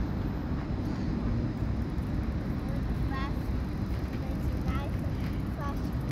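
Steady low outdoor rumble, with faint distant voices about three and five seconds in.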